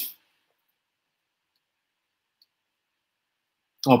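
Near silence in a pause between a man's speech, broken only by two very faint ticks about one and a half and two and a half seconds in; his speech resumes near the end.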